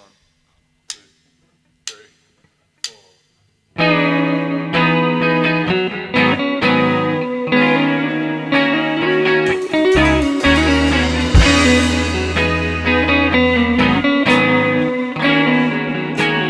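Four drumstick clicks about a second apart count the band in. About four seconds in, an indie rock band comes in together and plays an instrumental intro: electric guitars, saxophone, bass guitar and drum kit.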